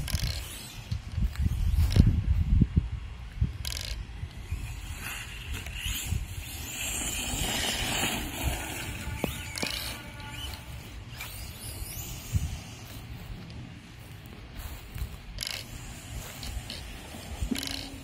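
A 1/10-scale RC monster truck running across grass on a 2S battery: the motor and drivetrain whir, strongest about a third of the way through. A few sharp knocks come at the start and again near the end, over a steady low rumble on the microphone.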